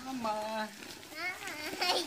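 Quieter speech: short snatches of voices talking, none of it clear enough to make out.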